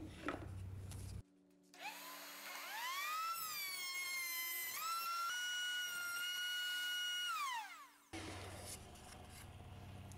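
Router in a router table spinning up with a rising whine, running at a steady high pitch while a board is fed across the bit to cut a tongue on its end grain, then winding down with a falling whine near the end.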